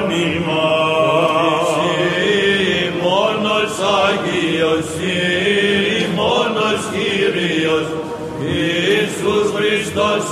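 Byzantine chant (psaltiki) sung by male chanters: a melismatic melody winding up and down over a steady held drone note (the ison), unbroken throughout.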